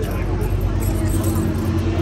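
A motor vehicle's engine running close by: a steady low rumble with a hum, over background voices.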